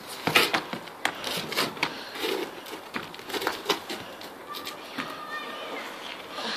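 Irregular scuffs and knocks of someone climbing a brick wall onto a flat outbuilding roof: shoes scraping the brickwork and hands gripping the roof edge.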